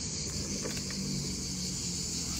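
Insects chirring in a steady, unbroken high-pitched drone, with a faint steady low hum underneath.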